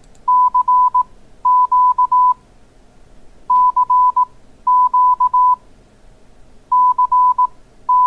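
Morse code (CW) tone of about 1 kHz keyed on and off, spelling 'CQ' three times: dah-dit-dah-dit, dah-dah-dit-dah. This is the general call to any station listening.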